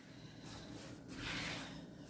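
Faint squishing and rubbing of hands mixing flour into a soft dough in a plastic bowl, a little louder past the middle.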